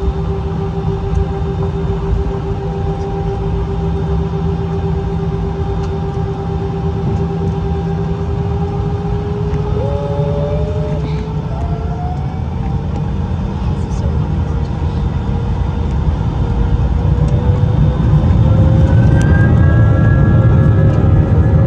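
Airbus A319 jet engines heard from inside the cabin: a steady whine over a low rumble, the whine starting to rise about halfway through. Near the end higher whines climb in and the rumble gets louder as the engines spool up to takeoff power.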